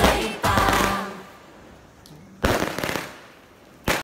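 Aerial firework shells bursting: a sudden loud bang about two and a half seconds in that trails away over about a second, and another just before the end. Before them, a festive Chinese New Year song fades out within the first second.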